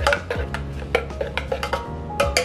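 A metal fork clinking and scraping against the inside of a stainless steel French press carafe while coffee grounds are stirred: quick, irregular clicks, over background music.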